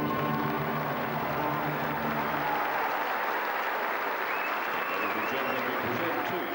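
Crowd applauding in an indoor pool arena, over the last held chord of a brass-and-orchestra anthem played for the flag. The chord ends about two and a half seconds in, and the applause carries on.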